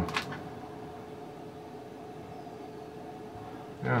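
Quiet room tone with a faint steady hum, and a couple of brief clicks just at the start.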